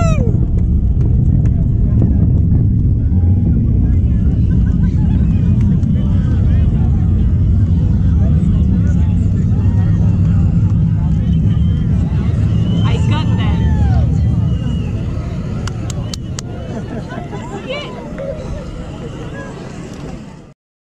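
Low, crackling rumble of a distant rocket launch, steady and loud, then fading away over the last few seconds. A few whoops from onlookers rise above it near the start and twice more later.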